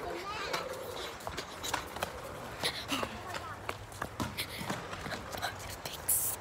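Faint children's voices with irregular light clicks and knocks throughout.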